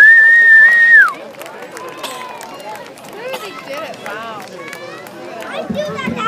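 A loud whistle from the crowd, held on one pitch for about a second and falling away at its end, followed by many spectators talking at once.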